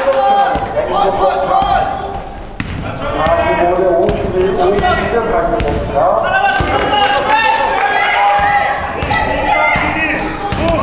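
A basketball being dribbled, bouncing on a hardwood gym floor, with players' voices calling out through much of it, the sound echoing in the large hall.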